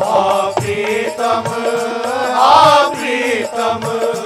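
A man singing a Hindu devotional bhajan in long, drawn-out melodic phrases that swell loudest about halfway through, over instrumental accompaniment with a steady percussion beat.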